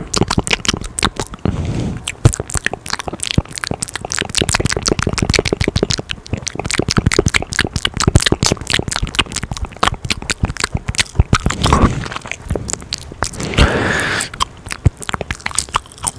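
Rapid, wet mouth clicks, smacks and crackles from a person chewing gum with the lips right against the microphone, a dense run of many sharp clicks a second with brief pauses.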